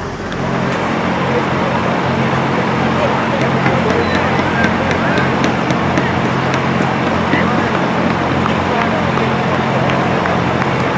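Crowd of spectators cheering and shouting along the course, over a steady low engine hum.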